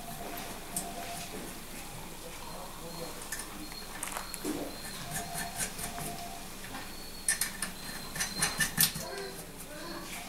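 Light metallic clicks and clinks of cylinder head nuts being set on the studs and spun down by hand, with a few scattered clicks early and a quick run of clicks near the end.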